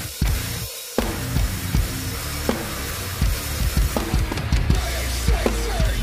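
Acoustic drum kit played hard along to a heavy hardcore backing track: kick, snare and cymbals. The low end drops out briefly in the first second, then the full band and drums come back in on a loud hit at about one second and carry on driving.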